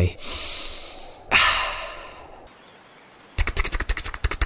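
Cartoon sound effects: two long airy hisses, each fading away, then after a short pause a rapid flapping rattle starts, about ten beats a second.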